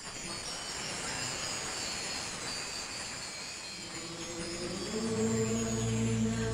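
Film title soundtrack: a sudden rushing, shimmering swell with high glittering tones, joined about five seconds in by a steady low drone as the music begins.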